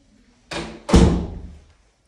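A door slamming shut: two knocks under half a second apart, the second louder and deeper, with a short ringing tail in the small room.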